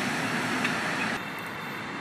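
Steady city street traffic noise from buses, scooters and cars. A little past halfway it turns quieter and duller.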